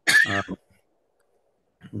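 A man clears his throat briefly, running straight into a hesitant "um". That is followed by dead silence, and a word begins just before the end.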